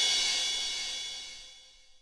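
A cymbal ringing out over the fading tail of a big band's final chord, dying away steadily to silence near the end.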